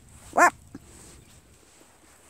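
A single short, high-pitched vocal call, rising then falling in pitch, followed by a faint click.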